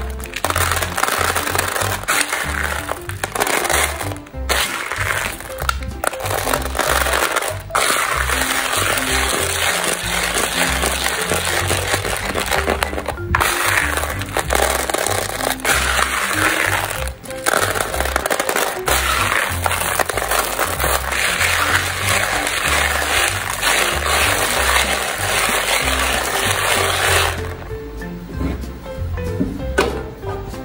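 Small hard-shelled candies pouring and being scooped in a plastic basin: a dense, loud rattling patter of many tiny clicks, cut off abruptly for a moment several times.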